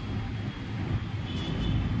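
A low, steady background rumble, of the kind a vehicle makes.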